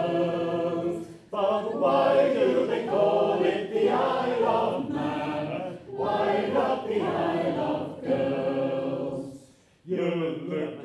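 Three men singing a Victorian popular song unaccompanied, in sung phrases with a brief break a little after one second in and a pause just before the end.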